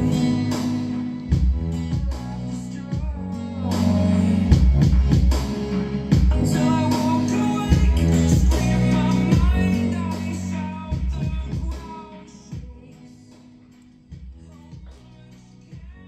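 A song with vocals and heavy bass played really loud through speakers driven by a battery-powered TPA3255 class D amplifier board (Aiyima A07), its supply held steady by a buck converter and added capacitors. The volume falls away from about eleven seconds in.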